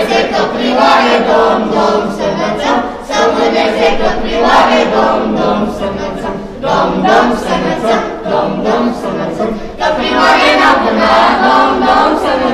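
A group of children singing a Romanian Christmas carol (colindă) together, unaccompanied, phrase after phrase with short pauses for breath.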